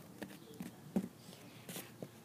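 A few soft taps and handling sounds of small plastic toy figures being picked up and set down on a foam mat, the loudest knock about a second in.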